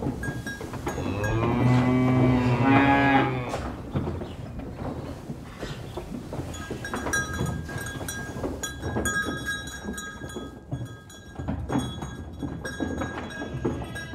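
A cow mooing once, a long, loud low call about a second in. It is followed by scattered knocks and faint high ringing, clinking tones.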